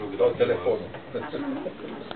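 A man's voice saying "da" into a cup of a cup-and-string telephone, loudest in the first second.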